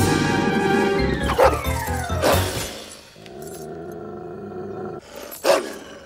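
Cartoon dog's angry growling roar over dramatic music in the first two and a half seconds, with a falling glide through it. Held music follows, and there is a sharp burst near the end.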